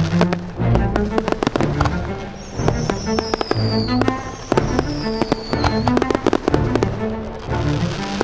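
A fireworks display: many sharp bangs and crackling bursts in quick succession over loud orchestral film music. In the middle, two high whistles fall in pitch one after the other.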